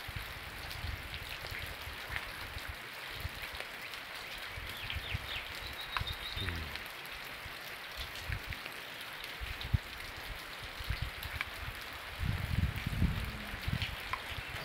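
Rain falling steadily, with a continuous hiss and scattered patter of drops. A low rumble comes in near the end.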